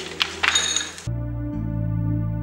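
A wooden handloom clacking and clinking a few times over soft background music. The loom sounds stop suddenly about a second in, leaving only the music.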